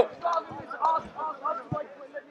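Quiet, indistinct speech well below the main voice, with a few soft low thumps.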